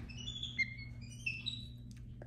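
Capuchin monkey giving a quick run of high, thin chirps and twitters, a dozen or so short whistle-like notes at several pitches.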